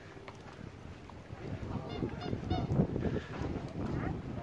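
Outdoor harbour ambience: wind rumbling on the microphone, growing stronger partway through, with a few short, faint high-pitched calls about two seconds in.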